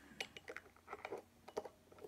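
A few faint, short clicks and taps of small hard objects being handled on a desk.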